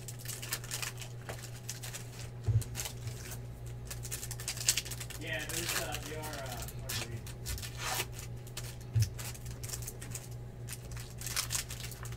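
Foil trading-card pack wrappers being torn open and crinkled by hand, with a run of short crackles throughout. Two dull thumps come about two and a half seconds in and again near nine seconds.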